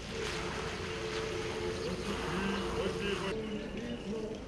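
Group of voices in an Orthodox procession singing a church hymn, holding long notes, heard from a distance under rough wind noise on the microphone that drops away suddenly near the end.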